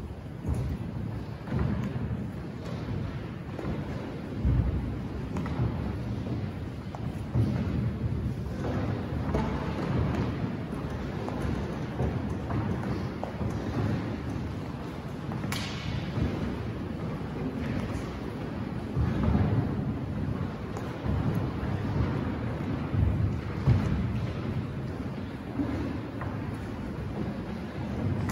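Many people walking and shuffling on a hard floor in a reverberant church, giving a low rumble with irregular thuds, and one sharp click about fifteen seconds in.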